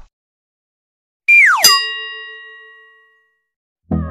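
Intro sound effect: a quick falling tone about a second in that lands on a bell-like ding, which rings out and fades over about a second and a half. A music track with a steady beat starts right at the end.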